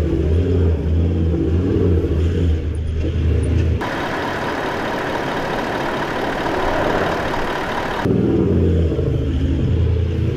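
4WD engine working hard and changing revs as the vehicle climbs a soft sand track, with tyre noise close by. For about four seconds in the middle the engine gives way to a steady hiss with a thin, high, steady whine; the engine comes back near the end.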